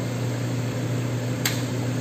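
Steady low hum of a running laser cutting machine, with one short click about one and a half seconds in.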